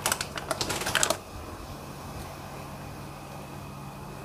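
Foil seasoning sachets crinkling as they are squeezed empty, a quick run of small crackly clicks for about a second. After that only a faint steady hiss remains.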